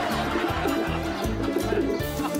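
Background music with a steady beat, and over it a bird's low cooing call from about half a second in to near the end.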